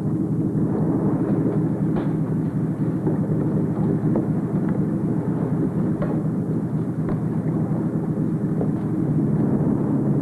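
Steady low engine rumble with a few faint clicks.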